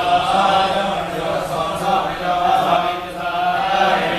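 Devotional chanting: a voice chanting a mantra in long, held notes.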